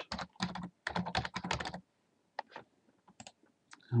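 Typing on a computer keyboard: a quick run of keystrokes for the first two seconds or so, then a few single clicks spaced out near the end.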